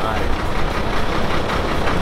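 Steady outdoor city din: a continuous, even roar with a low rumble, typical of traffic around the waterfront.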